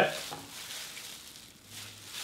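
Faint wet squelching and crackling of fresh vinegar-set mozzarella curd being gently squeezed in plastic-gloved hands, with whey dripping into a glass bowl.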